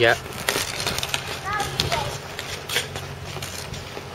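Hockey sticks and skate blades on rink ice: sharp clacks of stick blades on the ice and puck, several times over the few seconds, with scraping in between.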